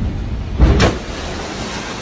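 A storm wave smashes in a ferry's cabin window: a loud crash about half a second in, then the rush of water pouring into the cabin, fading, over the low rumble of wind and sea.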